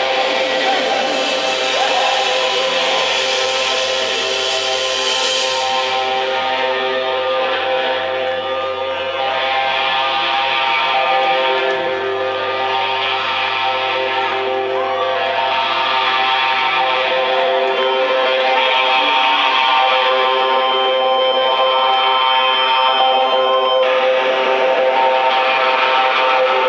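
Live rock band's electric guitars and bass holding a loud, sustained drone of long notes, with no drum beat. A high hiss fades out about six seconds in, and the low bass note drops away about seventeen seconds in.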